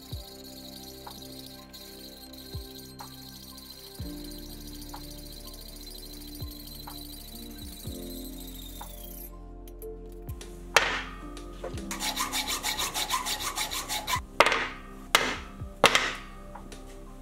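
Hand hacksaw cutting through 12 mm square mild steel bar stock held in a vise. The sawing is faint at first and becomes a loud run of quick rasping strokes in the last few seconds.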